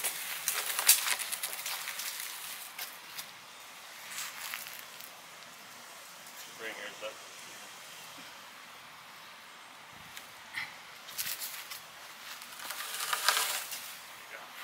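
A heavy wooden sign frame of lumber posts and a plywood panel being lifted and shifted by hand: scattered knocks and scrapes of wood, with a louder scraping rush near the end as it is set against a woodpile.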